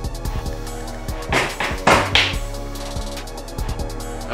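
Background music with a steady beat, over a few knocks and cracks of a plaster dig-kit block being chipped with a small hammer and chisel, loudest about one and a half and two seconds in, as a chunk splits.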